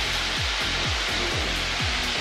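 Steady engine, propeller and airflow noise heard inside the cockpit of an Extra aerobatic aircraft in flight, running at reduced power in the circuit. Under the constant rushing sound is a low throb that repeats several times a second.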